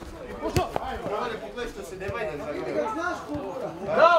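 Indistinct men's voices calling out across a football pitch, with a single sharp knock about half a second in.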